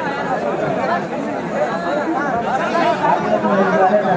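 A dense crowd of men talking and calling out at once, many voices overlapping into a steady chatter.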